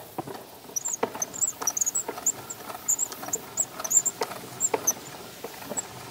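Light, irregular clicks and knocks from a wooden horn gramophone being handled as a record is set on it and the crank is reached for, a few per second. Short high squeaks run through most of it.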